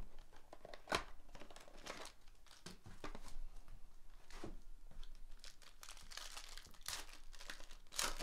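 Foil trading-card pack wrapper crinkling and tearing as it is opened by hand: irregular crackles, with a few sharper snaps.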